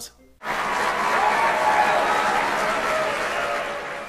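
Crowd applause with some voices in it, starting suddenly about half a second in and slowly fading out.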